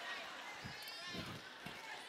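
Faint laughter and murmuring from an audience in a pause between a preacher's lines.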